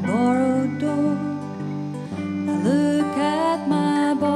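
A woman singing a slow song over acoustic guitar, her voice sliding up into long held notes twice.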